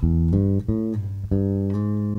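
Five-string electric bass playing an A minor chord as a run of plucked notes, one after another, each left to ring.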